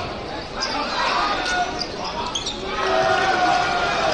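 Basketball being dribbled on a hardwood court during live play in a large gym, with short sharp strokes and voices in the background.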